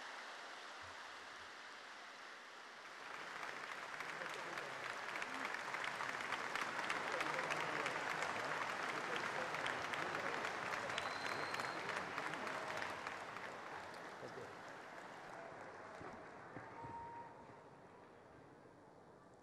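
Large audience applauding. The clapping swells about three seconds in, holds through the middle and dies away near the end.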